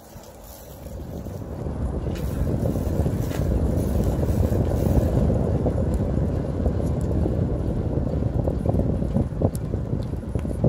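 Wind buffeting the microphone of a camera carried on a moving bicycle, a low rumble that builds up over the first couple of seconds and then holds steady, with a few light knocks near the end.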